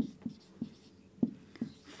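Marker pen writing on a whiteboard: about half a dozen short taps and scratches as the letters are drawn.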